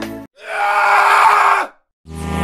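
The music cuts off, then a loud burst of screaming lasts about a second and a half and stops abruptly.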